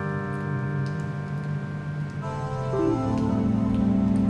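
Electronic keyboard and synthesizer playing held chords in a live band; about two seconds in the chord changes, with notes stepping down to a lower note, and the music grows louder near the end. Faint light ticks sound over the chords.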